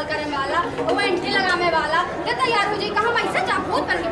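Speech only: several voices talking over each other.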